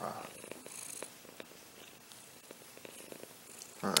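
Domestic cat purring steadily and softly while being petted on a lap.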